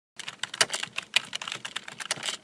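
Computer keyboard typing: a quick, irregular run of key clicks that starts just after the beginning.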